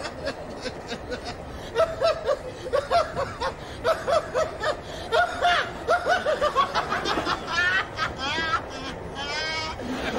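A man laughing hard in repeated bursts of short laughs, breaking into higher-pitched, rising giggles near the end.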